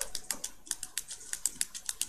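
Typing on a computer keyboard: a quick, uneven run of keystrokes, about eight a second.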